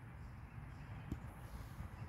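Faint background noise with phone handling sounds and one light click about a second in, as the phone is turned from the man's face toward the mower engine.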